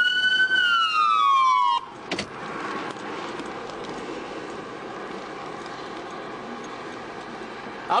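Police car siren wailing: the tone tops out about half a second in, falls, and is switched off abruptly just under two seconds in. A short click follows, then a steady, quieter hum of the idling car.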